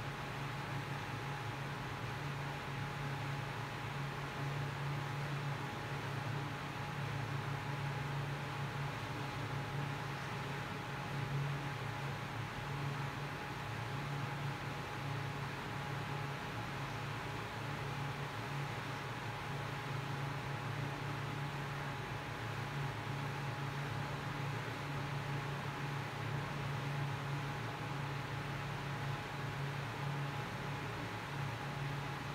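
Steady background hiss with a low hum and a faint thin whine above it, unchanging throughout, with no distinct events: room noise.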